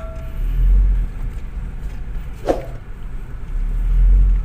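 Low rumble of a Honda car moving slowly, heard inside its cabin: engine and road noise that swells twice, with one brief mid-pitched sound about halfway through.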